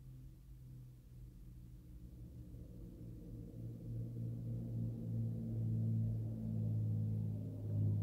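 A low, sustained drone of several steady tones, growing louder over the first few seconds and then holding.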